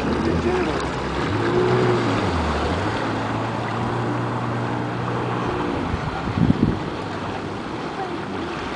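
Jet ski engine running at low speed, pushing slowly through the water. Its pitch dips and comes back up about two seconds in, then holds steady, over splashing water at the hull. A brief louder noise comes about six and a half seconds in.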